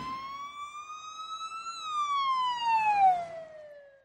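A siren-like sound effect: one long wail that rises slowly for under two seconds, then falls in pitch for about two seconds and fades out.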